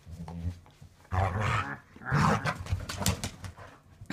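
A dog making sounds while thrashing a rope toy, with a few sharp knocks a little before the end. A person laughs about a second in.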